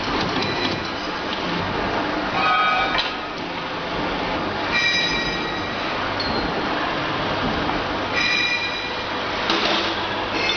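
Loud, steady machinery noise with three brief high-pitched metallic squeals, about two and a half, five and eight seconds in.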